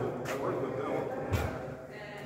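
Indistinct voices echoing in a large hall, with a single thud about a second and a half in.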